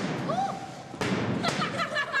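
Sharp thuds, the loudest about halfway and two more near the end, mixed with people's voices.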